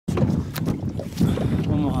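Wind buffeting the microphone on an open boat, an uneven low rumble, with a few sharp knocks in the first second.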